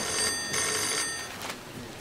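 A telephone ringing: one ring lasting about a second, then it stops.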